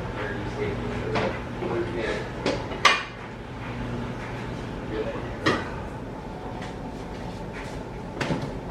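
Household clatter: scattered clinks and knocks of objects being handled and set down, the sharpest about three seconds in and another about halfway through, over a steady low hum.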